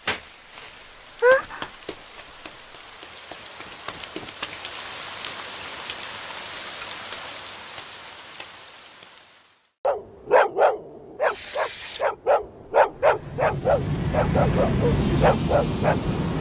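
Rain falling steadily for about nine and a half seconds, cutting off suddenly. After a moment of silence, a run of short sharp barks, two or three a second, with a low rumble building under them near the end.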